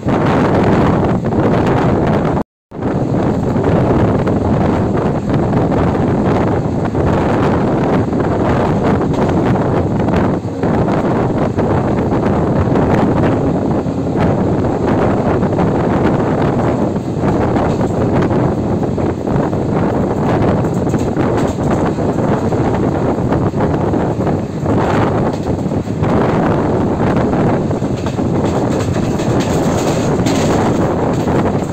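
An express train's passenger coach running at speed, heard from its window: a steady rumble and rush of wheels on rail, with wind buffeting the microphone. The sound drops out to silence for a moment about two and a half seconds in.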